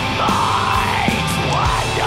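Atmospheric black metal recording: a dense wall of band sound with a harsh yelled vocal over it.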